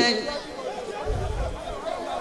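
Chatter from a large crowd of people, many voices overlapping, much quieter than the loud chanted note that cuts off at the very start. A brief low rumble comes about a second in.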